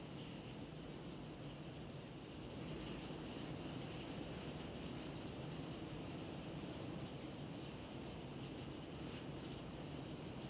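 Quiet, steady room tone: a faint low hum and hiss with no distinct sounds.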